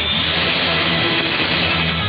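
Music from an AM broadcast station on 1700 kHz, played through a software-defined radio receiver. The audio is narrow and muffled, with nothing above about 5 kHz.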